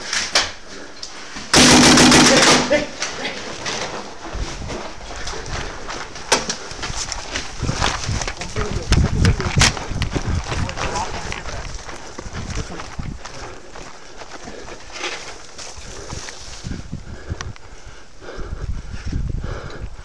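A rapid burst of paintball marker shots, close and very loud, about a second and a half in and lasting just over a second, followed by a few scattered single shots and the noise of players running.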